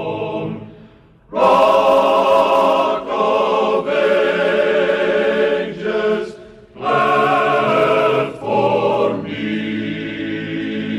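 Male chorus singing a hymn in harmony, in long held phrases with short breaks about a second in and again about six and a half seconds in.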